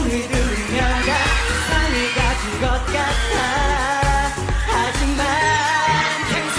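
K-pop dance song with singing over a steady, heavy beat.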